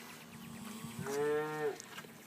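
One moo from a cow or calf in a herd of Brangus cows with Charolais-cross calves, starting about a second in and lasting under a second.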